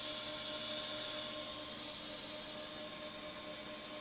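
Steady electrical hum with a few fixed tones under an even hiss; no distinct events.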